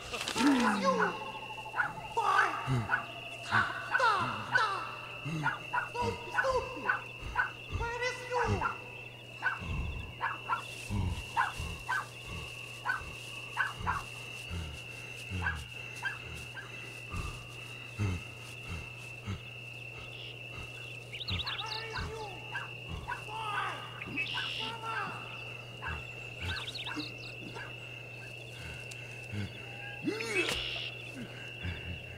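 Film soundtrack: a steady high whine and a low hum run under many short, irregular sounds that bend in pitch. These come thickest in the first ten seconds and again about two-thirds of the way through.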